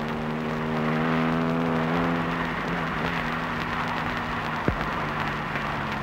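Steady running noise of a car heard from inside the cabin, with a held low tone fading out over the first two or three seconds.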